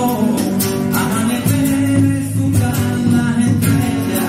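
Live Andalusian rock band: a man sings over a strummed nylon-string electro-acoustic guitar, backed by hand-drum percussion.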